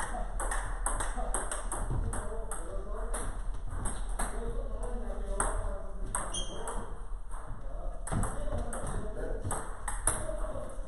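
Table tennis rally: the ball clicking off penhold bats and the table in a quick, even run of hits, two or three a second. There is a brief high squeak about six seconds in.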